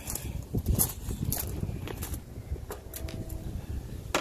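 Footsteps on gravel with a string of irregular clicks and knocks from moving about.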